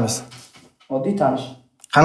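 Men's voices speaking in short phrases with brief pauses, in a small room.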